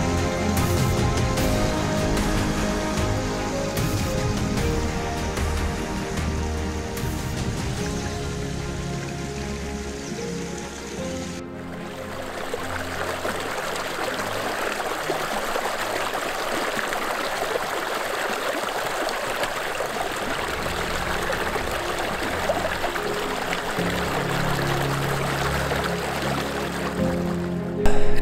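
Background music that grows quieter for about the first eleven seconds. Then it cuts suddenly to a small creek running and splashing between boulders, with low music notes coming back in under the water near the end.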